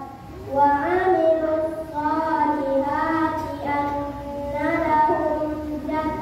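Children singing, with long held notes that slide between pitches.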